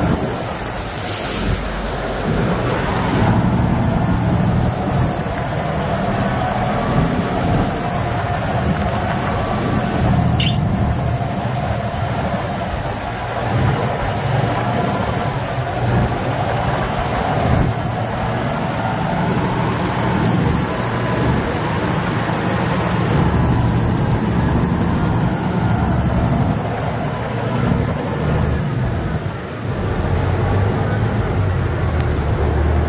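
Canal water taxi's engine running loud and steady while the boat is under way. A thin high whine wavers up and down above it.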